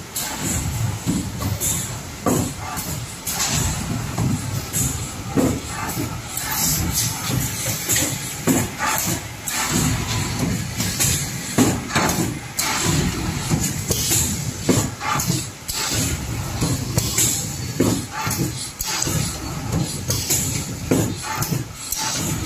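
Corrugated-box folder gluer running in production: a steady machine noise with frequent irregular clacks and clatter as cardboard blanks are fed off the stack and carried through the rollers and folding section.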